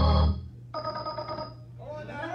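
Church organ holding a loud chord that cuts off sharply about a third of a second in, followed by a softer held chord.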